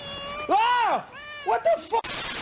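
Long-haired white cat meowing. Starting about half a second in, there are two drawn-out meows that rise and fall in pitch, then a few quick short ones.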